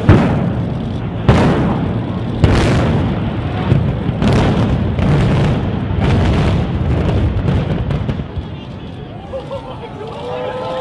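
A series of loud bangs, about one a second, each trailing off over a continuous low rumble, dying down near the end.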